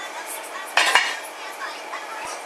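Iron weight plates clinking and rattling on a loaded barbell during a bench press, loudest just under a second in.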